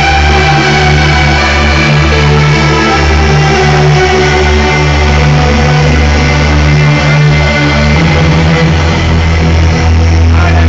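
Loud electronic dance music played live on keyboard synthesizers: sustained synth chords over a heavy, continuous bass. The bass line changes about eight seconds in.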